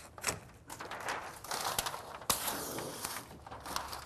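Utility knife slicing through Tyvek HomeWrap house wrap in a level cut across the window sill, with crinkling of the sheet and scattered sharp clicks. One click a little past the middle is the loudest.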